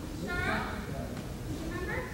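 High-pitched voices calling out twice, each call falling in pitch, over a low murmur of other voices.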